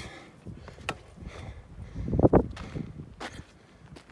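Footsteps and scuffs of someone climbing the last rungs of a wooden ladder onto rock, with a few sharp knocks and a louder burst about two seconds in.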